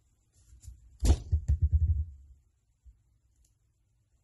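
Handling noise at a work table: a quick run of dull thumps and knocks about a second in, lasting about a second, from hands bumping the tabletop.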